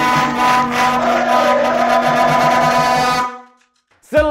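A yellow plastic stadium horn (vuvuzela type) blown in one long, steady, buzzy note over a music sting. The horn cuts off about three seconds in.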